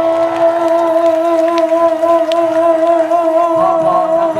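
A man's voice singing one long held note into a microphone, amplified through the PA, with a slight steady vibrato.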